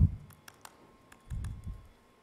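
Laptop keyboard keys clicking a few times, with a low muffled thump about a second and a half in.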